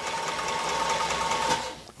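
Cobra Class 4 sewing machine running on its servo motor to drive the built-in bobbin winder, winding thread onto a bobbin: a steady whir with a fine, rapid ticking of the mechanism that winds down and stops near the end.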